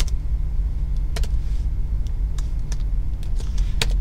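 Computer keyboard keystrokes, a handful of sparse, separate clicks, over a steady low hum.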